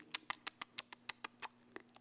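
A quick run of light, sharp clicks, about eight a second and fading toward the end: a sound effect of the little webbed toenails of pickled duck's feet clicking as they are walked across a table.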